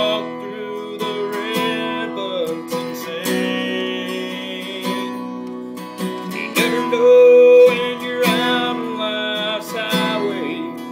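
A man singing a country song while strumming an acoustic guitar. One long held vocal note about seven seconds in is the loudest moment.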